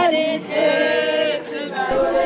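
A group of women singing a traditional Sepedi song together in unison, unaccompanied. The sound changes abruptly to a different, noisier recording just before the end.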